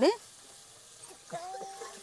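A woman's word ends right at the start, leaving a low background. About a second and a half in comes a faint, held, slightly rising call lasting about half a second.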